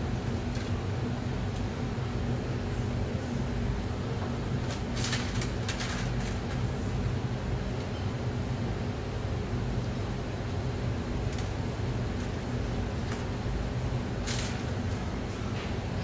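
Steady low machine hum of kitchen equipment running, with a few faint clicks from handling around five to six seconds in and again near the end.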